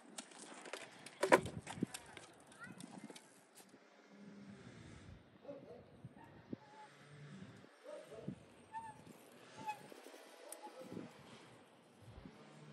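A BMX bike being lifted out of its wooden stand: a few knocks and rattles in the first two seconds, the loudest about a second in. After that there is faint outdoor ambience with scattered short, faint calls.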